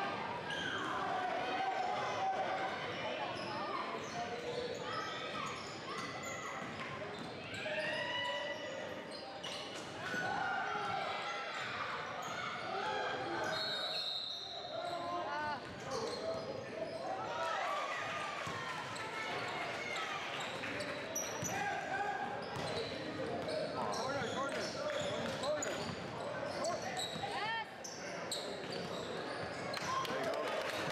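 A basketball bouncing on a hardwood gym floor during play, with players and spectators calling out. The sound echoes in the large hall.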